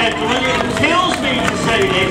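Speech: voices talking throughout, at a steady level.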